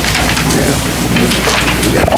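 Dense crackling and rustling of a microphone being handled and adjusted on its stand, close and loud over a low steady hum.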